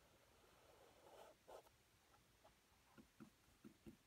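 Faint sound of a flat brush stroking oil paint onto canvas: a soft scrub about a second in, then a few light ticks near the end.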